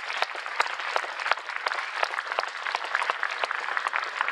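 Audience applauding: a crowd of people clapping their hands in a large hall, dense and sustained, easing off near the end.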